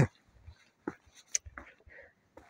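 Quiet, with a few faint, short scuffs and knocks of a hiker's footsteps on rock, scattered from about a second in to the end.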